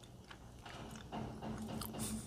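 Faint mouth sounds of a person eating a spoonful of soft, half-thawed vegan ice cream: small lip and tongue clicks as it is tasted.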